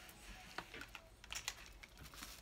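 A few faint, light clicks and taps of oracle cards being handled.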